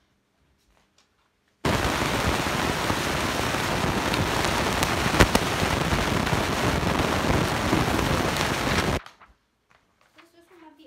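Loud, steady crackling hiss that starts abruptly about a second and a half in and cuts off suddenly near the end, with one sharp crack about halfway through.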